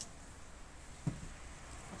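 Quiet, steady background hiss, with a faint click at the start and a single short spoken word about a second in.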